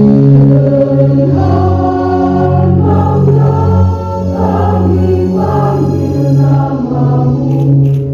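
Background music of a choir singing slow, held chords.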